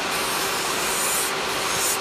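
Electric nail file (e-file) running steadily with a sanding band, sanding gel polish off a fingernail: a steady motor whine over a hiss. The hiss turns brighter for a moment a little past the middle.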